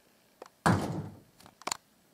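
An interior door thumping once about two-thirds of a second in, followed by a couple of light clicks.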